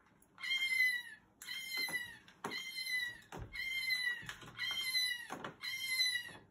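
A cat meowing repeatedly: about six similar calls, each close to a second long and sliding slightly down in pitch, coming about once a second.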